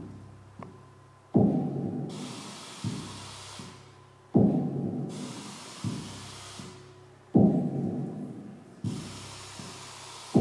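Looped electronic sound piece played through loudspeakers: a deep, drum-like boom that dies away slowly, repeating about every three seconds, each followed by a softer hit. A hiss swells and fades between the booms.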